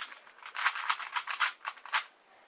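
QJ pillowed 3x3 plastic puzzle cube being turned quickly by fingertips, its layers clicking and clacking in a fast, uneven run.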